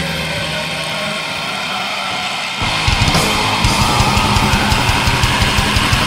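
Black metal song: distorted guitars play on their own for about two and a half seconds, then the drums and bass come back in with fast, dense drumming and the music gets louder.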